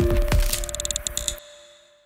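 Cinematic intro music and sound design: a held synth chord with sharp cracking hits over a deep low rumble. It cuts off about a second and a half in and fades to a faint tail.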